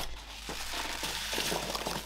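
Packing peanuts being scooped up and dropped by the handful into a cardboard box around a paper-wrapped mug: a continuous rustle.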